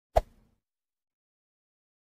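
A single sharp thump about a fraction of a second in, dying away within half a second, against otherwise dead silence.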